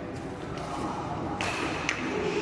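Badminton hall sounds: a low murmur, then near the end a sudden high tone and a sharp hit.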